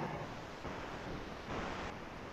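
Steady hiss of background noise picked up by an open microphone on a video call.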